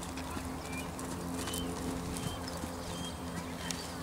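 Horse's hooves beating on arena sand at the trot, over a steady low hum, with a few short high chirps.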